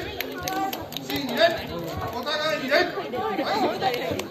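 Several people talking at once, overlapping chatter echoing in a large gym hall.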